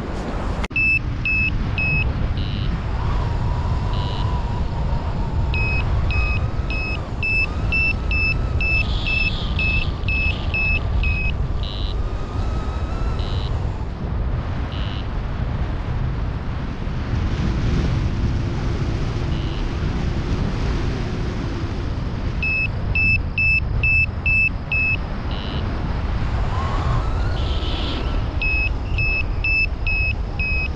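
Paragliding variometer beeping in runs of quick, short beeps, about two a second: near the start, for several seconds in the middle third, and again twice near the end. This is the climb tone that sounds when the glider is rising in lift. Under it, a steady rush of wind on the microphone.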